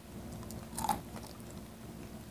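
Close-miked biting and chewing of crispy fried pork, with scattered crunches and wet mouth sounds, the loudest crunch just under a second in.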